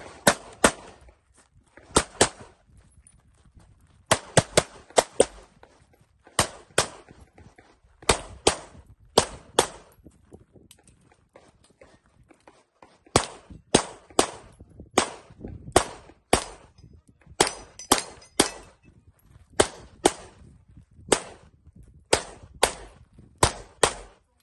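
CZ SP-01 pistol firing rapid pairs of shots, in several strings broken by short pauses, about forty shots in all, stopping near the end.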